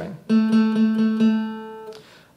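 Acoustic guitar sounding a B minor 7 barre chord at the 7th fret in several quick strokes across the strings, then left ringing and fading.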